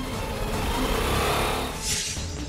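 Motor scooter engine revving under background music, with a swelling whoosh near the end.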